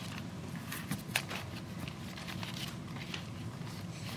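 Thin Bible pages rustling and flicking as they are turned, with a few crisp flicks about a second in, over a steady low room hum.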